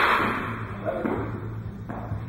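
The crack of a bat hitting a baseball echoing and fading through a large indoor batting cage over about a second, followed by two light knocks, one about a second in and one near the end.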